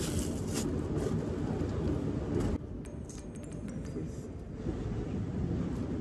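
Close rustling and handling of cloth and packed items in a tent, over a steady low rumble. The rustling stops about two and a half seconds in, leaving a few light clicks.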